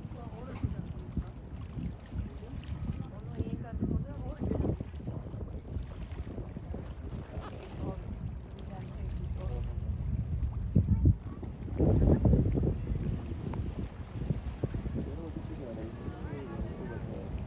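Wind buffeting the microphone by the sea as a low rumble, with its strongest gusts about two-thirds of the way through. Indistinct voices talk faintly in the background.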